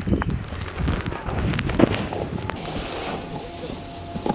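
Wind rumbling on an action camera's microphone, with scattered sharp clicks and knocks. The rumble eases off in the second half.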